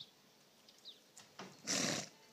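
A donkey gives one short, loud snort, a burst of blown breath, near the end, with her nose down at the dirt. Faint bird chirps come now and then in the background.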